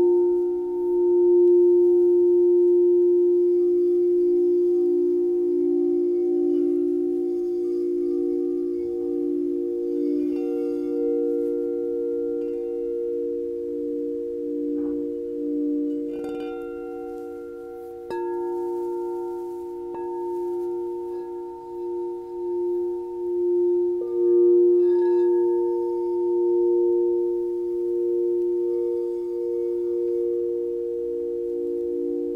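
Several crystal singing bowls ringing together in long, overlapping tones that slowly swell and fade, played with mallets. The bowls are struck afresh about halfway through and again a few seconds later, renewing the ring.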